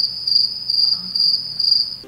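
Crickets chirping: a steady high trill pulsing about three times a second, which cuts off suddenly at the end. This is the comic 'crickets' sound effect laid over an awkward silence.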